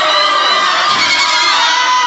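Canned crowd cheering and laughter, a dense mass of many voices at once, dropped in as a laugh track after a punchline.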